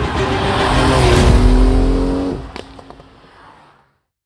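Porsche 911 flat-six engine pulling hard as the car drives past on a wet road, with tyre hiss. The engine note falls slightly in pitch, then the sound dies away after about two and a half seconds, with a few short sharp cracks as it fades.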